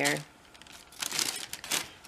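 Tissue paper in a shoebox crinkling in two short bursts as it is handled, after a single spoken word.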